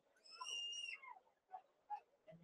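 A brief, faint, high whistle-like tone lasting well under a second, dipping slightly in pitch as it ends, followed by a couple of fainter chirps.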